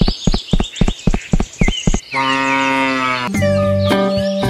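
A fast run of sharp clicks, about five a second, then a cow moos once for about a second, starting about two seconds in; music comes back near the end.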